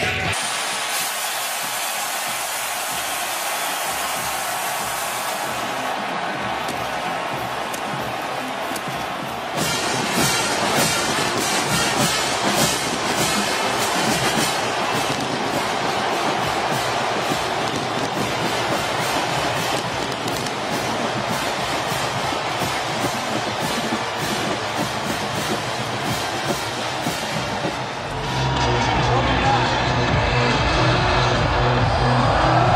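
A packed football stadium crowd cheering loudly as the team takes the field, with a steady rhythmic beat running through the noise from about a third of the way in. Near the end it gives way to music with a heavy bass beat.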